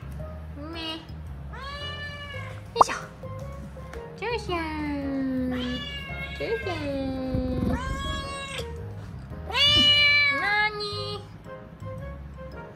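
A domestic cat meowing over and over: a series of long, drawn-out meows that rise and fall in pitch, about six or seven of them, the loudest a little before the end.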